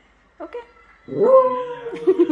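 West Highland white terrier giving one long, drawn-out whining howl with its head raised, starting about a second in and lasting nearly a second at a steady pitch: a vocal protest demanding play.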